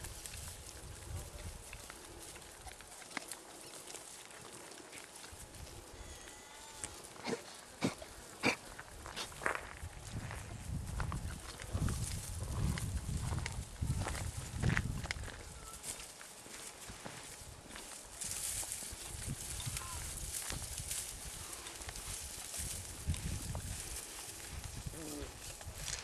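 Javelinas (collared peccaries) at close range giving low grunts, with scattered sharp clicks and rustling; the sounds are busiest around the middle.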